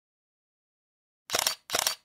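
Intro sound effect: two short, scratchy strokes in quick succession, starting just over a second in.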